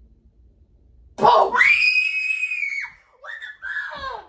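A person screaming in fright: one long, high-pitched scream starting about a second in, followed by two shorter cries near the end.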